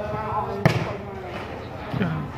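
A volleyball struck hard by hand: one sharp slap about two-thirds of a second in, and a softer hit near the end. Spectators' voices chatter steadily underneath.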